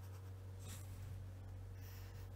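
Fineliner pen drawing lines on paper: two faint short strokes, one about two-thirds of a second in and one near the end, over a low steady hum.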